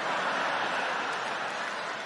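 Large theatre audience laughing and clapping after a punchline: a steady wash of crowd noise that holds through the pause and eases slightly near the end.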